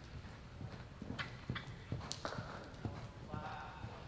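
Hoofbeats of a horse loping on the soft dirt floor of an indoor arena: a run of irregular dull thuds with a few sharper clicks between about one and two seconds in.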